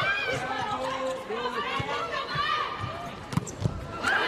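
Volleyball rally in an indoor arena: the ball is struck sharply a few times, the loudest hit coming near the end, over a steady mix of crowd voices and shouting.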